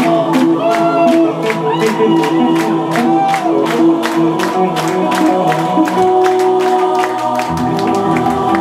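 A symphonic metal band playing live, with drums, bass and guitars under choir-like singing, driven by a steady drum beat. The low end drops away for a moment shortly before the end.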